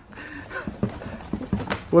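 A plastic oscillating fan knocking and scraping against a cardboard box as it is lifted out, a string of short knocks with cardboard rustling.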